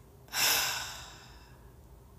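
A woman's deep calming breath, sighed out, that starts suddenly about a third of a second in and fades away over about a second.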